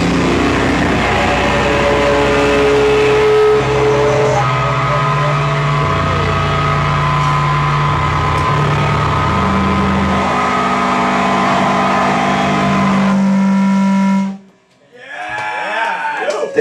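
A live rock band's distorted electric guitar and bass ring out in long, droning held notes, the pitch stepping from one sustained note to the next over a high steady tone, as the song ends; the sound cuts off suddenly about two seconds before the end, followed by voices.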